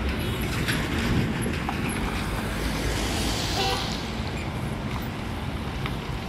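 MSRTC bus diesel engine running, a steady low rumble that slowly fades.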